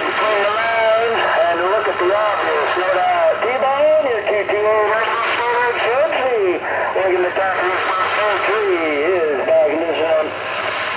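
Another station's voice coming in over a Galaxy CB radio's speaker, thin and confined to a narrow band, a little rough and hard to make out.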